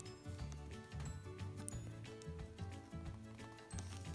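Quiet background music with held bass notes and light ticking percussion.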